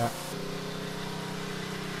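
Pressure washer's small engine running at a steady, even hum.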